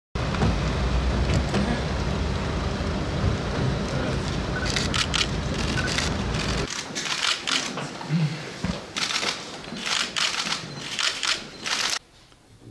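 Loud rumbling wind buffeting the microphone, cut off suddenly about two-thirds of the way in, followed by quieter outdoor ambience with a rapid scatter of sharp clicks and faint voices.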